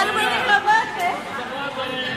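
Chatter of many people talking at once, with several overlapping conversations.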